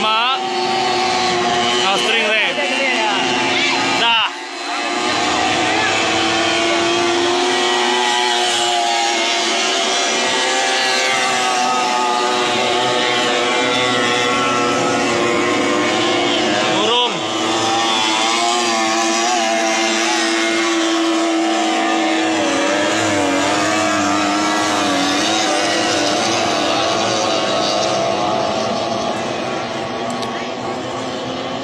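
Racing boats' 30 hp three-cylinder outboard engines running flat out, a loud, steady drone of several engines whose pitches waver against each other, with a brief dip about four seconds in.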